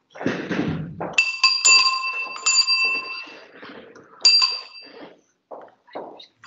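A small metal bell struck about four times, each strike ringing on in clear steady tones, the last a little after the middle. It follows a low rumbling noise in the first second.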